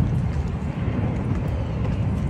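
A low, uneven rumble with no clear pitch and no distinct knocks.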